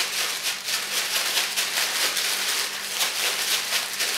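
Barely moist sand and milkweed seeds shaken and worked by hand inside a sealed zip-top plastic bag: a steady stream of fine rattling and plastic crinkling.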